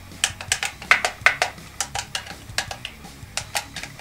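Push buttons on the faceplate of a cheap Chinese Pioneeir M-6006 car stereo being pressed one after another: a fast, uneven run of sharp clicks, a few a second. These are the buttons that still work and click normally.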